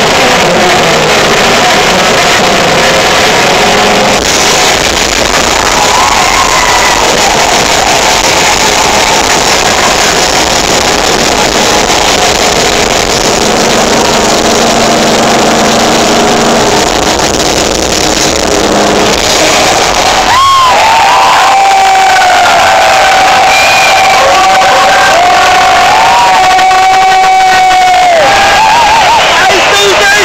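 A live hard-rock band plays over a cheering crowd, picked up very loud and distorted. About two-thirds of the way in, one long note is held high over the band.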